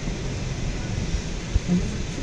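Steady low rumble and hiss inside a car rolling slowly along the road, with a couple of low thumps about one and a half seconds in.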